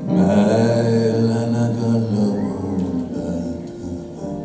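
Grand piano played live in a pause between sung lines: a full, low chord struck at the start and left ringing for about two seconds, then further notes.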